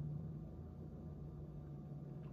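Quiet room tone with a faint low steady hum and no distinct sound events.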